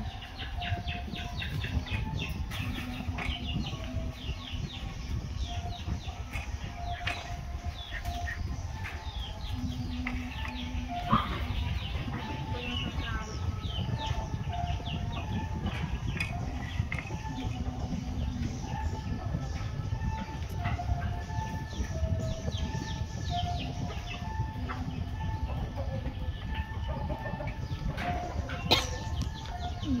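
Outdoor ambience of birds calling, many short high calls and short held notes repeating throughout, over a steady low rumble. A sharp knock stands out about eleven seconds in and another near the end.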